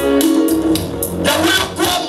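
Live gospel worship music: a band playing with a steady beat.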